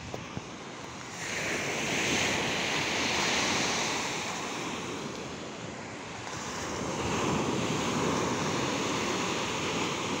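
Low sea waves breaking and washing up a sandy beach: a steady surf wash that swells up about a second in, eases off, and swells again about seven seconds in.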